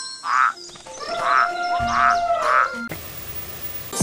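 Cartoon croaking sound effect, four rasping croaks over a few held chime-like tones, then a steady hiss for the last second.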